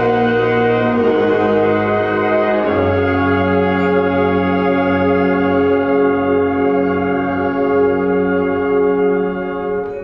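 Concert band playing sustained, brass-heavy chords. The chord changes twice in the first three seconds, then one long chord is held and breaks off near the end.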